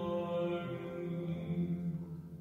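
Slow church chant, voices holding long sustained notes, dying away at the very end.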